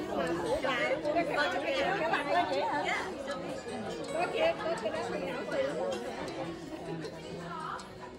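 Several women chatting at once around a table, their voices overlapping, with music playing softly underneath.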